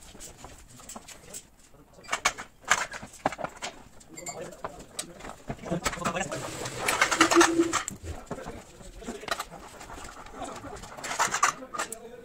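Clicks, knocks and clatter of a curtain-sided trailer's curtain and side-rail fittings being worked by hand, with a louder rustle of the curtain about six to eight seconds in and a brief low tone near seven seconds.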